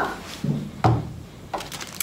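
A plastic Elmer's School Glue bottle set down on a tabletop: a soft bump, then a sharper knock a little under a second in, followed by faint handling noises.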